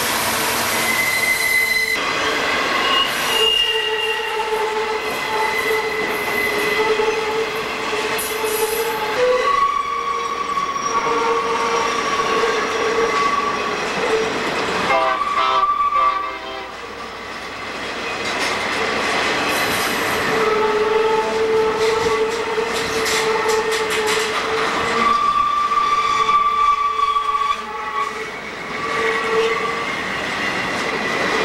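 Freight train of trailer-on-flatcar cars rolling past close by on a tight curve, the wheels squealing in several shrill held tones that come and go over the clatter of wheels on the rails. The squeal is the wheel flanges grinding against the rail on the curve.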